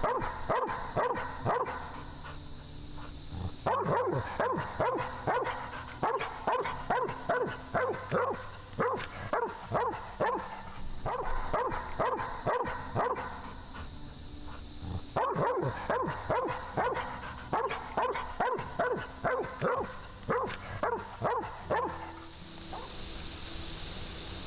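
A young mountain cur barking steadily at an opossum cornered in a hollow rotten log. The barks come in four runs of quick, evenly spaced barks, with short pauses between the runs.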